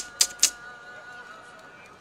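Three quick, sharp clicks in the first half second, then a faint steady background.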